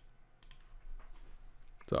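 A couple of faint clicks about half a second in, over quiet room tone, as a paused video is set playing; a short spoken "So" comes at the very end.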